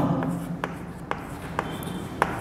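Chalk writing on a chalkboard: about four sharp taps, roughly half a second apart, as letters are chalked onto the board.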